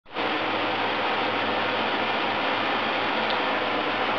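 Ford Explorer's 4.0-litre V6 idling with the hood open, a steady, even running noise.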